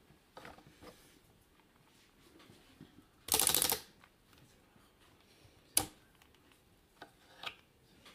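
Solenoids of a small handmade, computer-controlled loom firing as a weave step is run: a loud, rattling buzz lasting about half a second, about three seconds in. A single sharp click follows about two seconds later, then a few lighter clicks.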